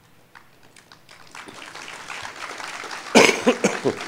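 A person coughing loudly near the microphone about three seconds in, a short run of harsh bursts. Before it, soft room noise swells from about a second in.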